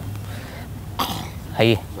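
A person clears their throat about a second in, followed by a short voiced sound, over a low steady hum.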